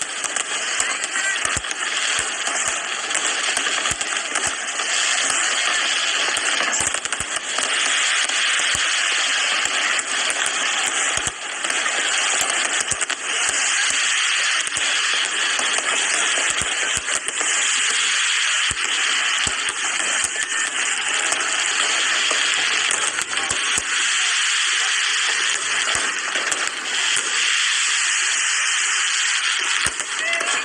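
Fireworks display: a continuous dense crackle and hiss, broken by many sharp bangs at irregular moments.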